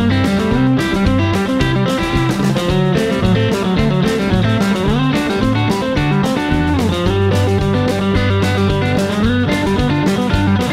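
Telecaster-style electric guitar playing country chicken-pickin' double-stop pull-off licks over a G–C–D backing track with bass, with a few bent notes.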